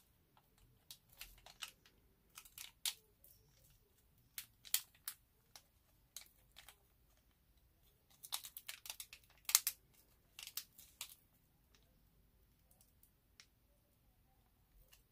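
A small foil sachet being crinkled and torn open by hand: scattered short crackles, busiest about eight to eleven seconds in.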